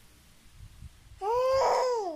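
A baby babbling: one drawn-out vowel sound, starting a little past a second in, that rises and then falls in pitch.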